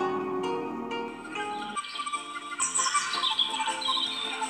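Background music of plucked strings. About two seconds in, the low notes drop away and quick, high chirping like birdsong comes in over the music.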